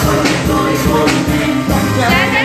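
Live church worship music: a band with singers on microphones through a PA, loud and steady, with a regular beat.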